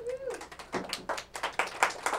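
A few people clapping, quick uneven hand claps, with a brief vocal sound at the start.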